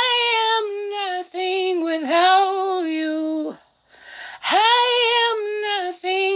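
A woman singing a praise song unaccompanied, in long held notes, with a short pause for breath about halfway through.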